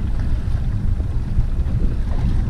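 Wind buffeting the microphone: a loud, uneven low rumble with no clear tone.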